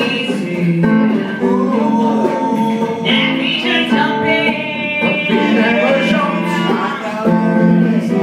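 A woman singing into a handheld microphone, with guitar accompaniment.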